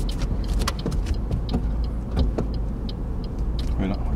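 Inside a car's cabin as it pulls out of a kerbside parking space: steady low engine and road rumble with scattered light clicks.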